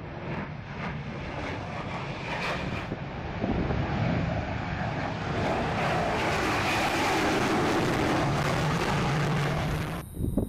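Jet noise of a B-1B Lancer bomber's turbofan engines as it flies low past. The sound grows louder about three and a half seconds in, holds loud and steady through the second half, and cuts off suddenly at the end.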